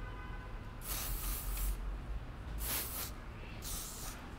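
Aerosol hairspray can spraying in three separate bursts: a longer one of about a second, then two shorter ones, the last near the end.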